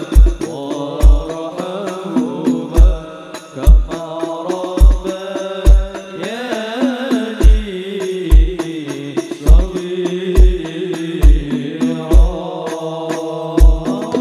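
Sholawat ensemble performing a devotional Arabic song: voices singing in a chanting style over percussion, with a deep bass drum thumping about once a second.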